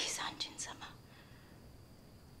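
A soft whispered voice for about the first second, then near quiet with a faint, thin high tone held steady underneath.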